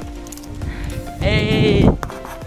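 A single drawn-out vocal call, about three-quarters of a second long and dipping slightly in pitch at its end, a little past a second in.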